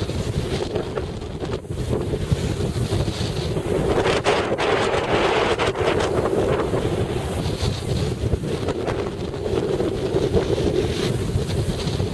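Strong wind blowing across the microphone, a loud, steady rush with low buffeting. This is the slope wind that holds the glider up.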